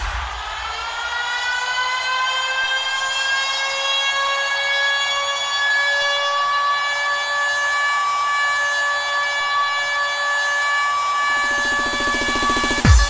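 Breakdown in a bounce / scouse house dance track: one long siren-like synth note slides up over the first second or so and then holds, with no drums. A low buzzing bass note comes in about a second before the end.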